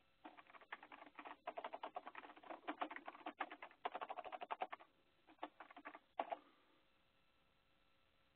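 Computer keyboard typing: quick runs of keystrokes for about six seconds, with a brief pause shortly before they stop.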